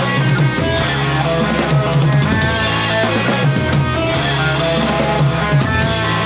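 Indie rock band playing live without vocals: distorted electric guitars holding chords over bass guitar and a full drum kit with bass drum and snare.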